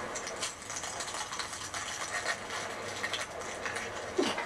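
Close-miked eating sounds in ASMR style: chewing with a rapid, irregular run of small clicks and crackles.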